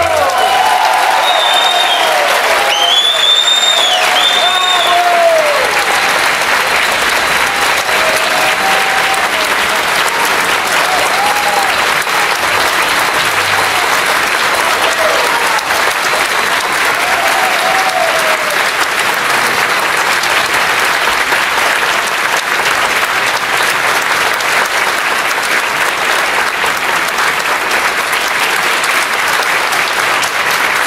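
Concert hall audience applauding steadily, with cheering voices over the first several seconds.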